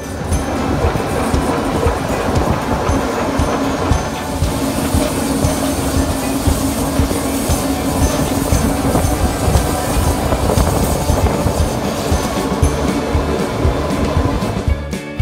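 Running noise of a vintage electric train heard from an open window of its coach: wheels clattering and rumbling over the track, with a steady tone held for several seconds in the middle.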